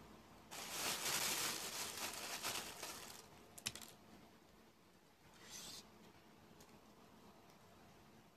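A hard-boiled egg's shell being cracked and rubbed by hand: dense crackling for about two and a half seconds, then a single sharp click and a brief rustle.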